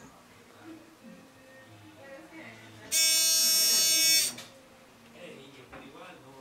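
Buzzer of a 555-timer shadow detector sounding one loud, steady buzzing tone for about a second and a half, starting about three seconds in. The buzzing is the alarm tripping as the opening door casts a shadow on the detector's light sensor.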